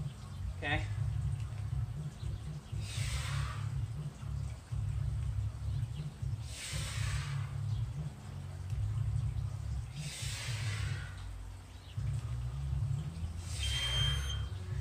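A man exhaling hard through his mouth, four breaths about three and a half seconds apart, each in time with a squat repetition while holding a steel club. A steady low rumble runs underneath.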